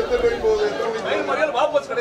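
Speech only: voices talking.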